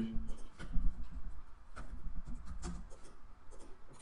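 Computer keyboard keystrokes and mouse clicks: a scatter of short, sharp clicks at uneven intervals over a low hum.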